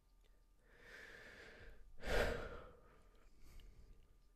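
A person sighing close to the microphone: a long breath in, then a louder breath out about halfway through, and a faint breath near the end.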